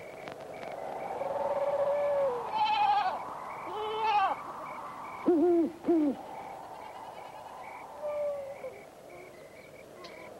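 A goat bleating several times, some calls wavering, with a pair of short, lower hooting calls about halfway through that are the loudest sounds.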